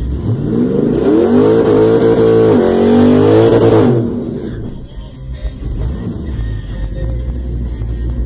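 Nitrous-fed 1998 Pontiac Trans Am's LS1 V8, heard from inside the cabin, revved hard for about four seconds. The revs climb, hold high and climb again, then cut off abruptly, dropping back to a low idling rumble.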